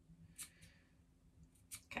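Fabric scissors snipping into the curved edge of a sewn piece of fabric: four short, faint snips, two about half a second in and two more near the end.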